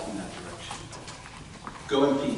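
Indistinct chatter of several people talking at once, with no single voice clear.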